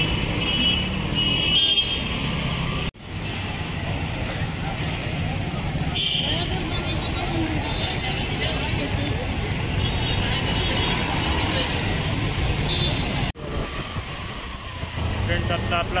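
Busy street traffic: motor vehicles running with a general din of people's voices. The sound breaks off abruptly twice, once about three seconds in and once near the end.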